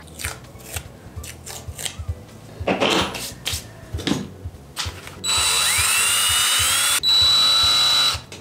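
A few light knocks as small objects are set on a table, then from about five seconds in a cordless drill runs at high speed, its motor whine rising as it spins up, boring into a bar of soap; it stops briefly near seven seconds and starts again.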